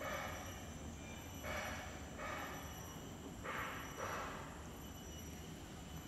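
Faint outdoor background noise: a low steady rumble with a few soft, brief hissing swells.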